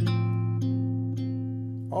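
A single chord on a Guild archtop jazz guitar, struck once and left to ring and slowly fade, a fresh note joining about half a second in. It is an F major voicing with the fifth on top, played over a different bass note.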